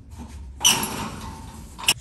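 Galvanized sheet-metal cover panel clanking as it is shifted and seated onto the steel nest frame: a sudden metallic rattle with a high ringing about half a second in that dies away over about a second, then a sharp click near the end.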